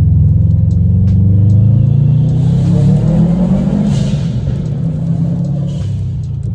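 Turbocharged flat-four of a 2012 Subaru WRX, fitted with an aftermarket downpipe and Invidia N1 cat-back exhaust, heard from inside the cabin while driving: the engine note climbs in pitch under acceleration for about two seconds, then holds steady at cruise.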